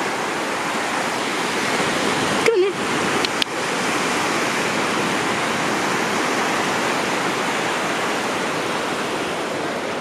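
Steady wash of small waves breaking and running up a sandy shore. About two and a half seconds in, a short wavering vocal sound.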